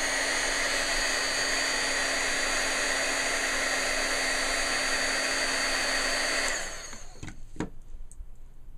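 Craft embossing heat gun running steadily, a fan rush with a low motor hum, blowing hot air to melt the embossing coating on a chipboard piece. It switches off about six and a half seconds in, the hum dropping as the motor winds down, and a couple of light knocks follow.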